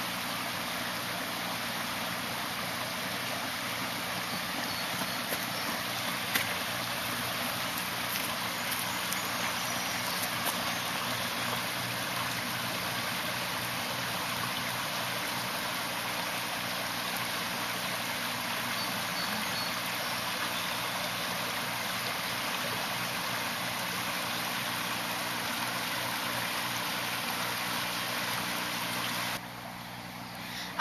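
Steady rushing of running river water, with a couple of faint clicks. It cuts off shortly before the end.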